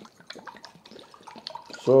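Faint, scattered small liquid sounds and ticks of plain drinking water being served.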